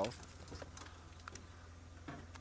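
Steady low hum of an open safari vehicle's engine running at idle, with a few faint clicks.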